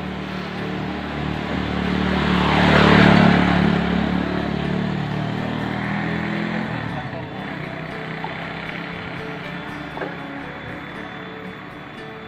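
A motor vehicle passing on the road: its engine and tyre noise swell to a peak about three seconds in and fade away over the next few seconds.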